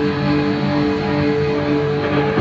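A live rock band playing the instrumental opening of a song, with electric guitars ringing out steady, sustained notes over a continuous band sound. It is recorded from the audience on a phone microphone.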